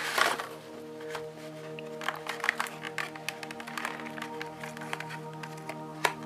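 Clear plastic packaging crackling and clicking in short irregular ticks as a boxed model railway coach and its plastic tray are handled and opened, over background music of steady held notes.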